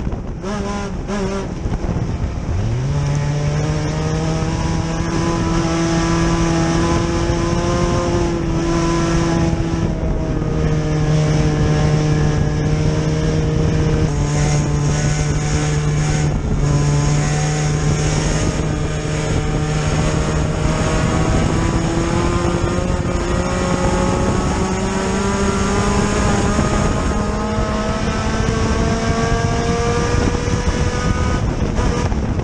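Engine of a four-cylinder Hornet-class dirt track race car heard from inside the cockpit, running hard at steady high revs. In the first couple of seconds the engine note briefly falls away, then the revs climb quickly and hold, dipping and lifting only slightly and creeping higher near the end.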